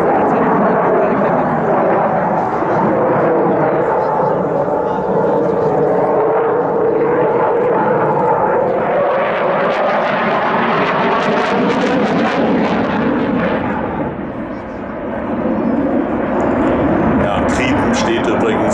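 Jet noise from a Saab JAS 39C Gripen's single Volvo RM12 turbofan during a flying display pass, a steady rumble with slowly gliding pitch. It grows fuller and hissier as the jet comes closer near the middle, then dips briefly about fourteen seconds in.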